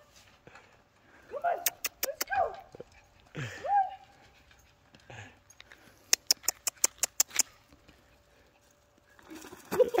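A young dog whining in short cries that rise and fall in pitch, followed a few seconds later by a quick run of about eight sharp clicks.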